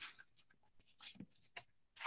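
A handful of faint, short rustles and clicks from someone handling things at a desk, with no speech.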